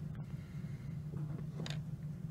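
Quiet room tone: a low steady hum, with a faint short rustle near the end.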